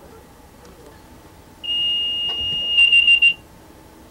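High-pitched electronic warning tone sounding in a train's driving cab. It comes on sharply, holds steady for about a second, then breaks into a few quick beeps and cuts off suddenly.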